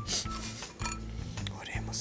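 Short scraping and rubbing noises of wooden popsicle sticks being handled and pushed into a soft bar of glycerin soap, twice, once just after the start and once near the end, over background music with a steady beat.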